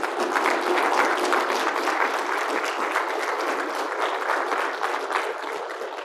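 Audience applauding, a dense patter of many hands clapping that starts all at once and begins to die away near the end.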